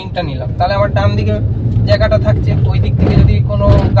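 Steady low engine and road hum heard from inside a Suzuki car's cabin as it drives slowly, with voices over it and a brief swell of noise about three seconds in.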